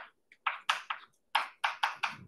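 Writing on a classroom board: a run of short, sharp strokes, several a second, each fading quickly.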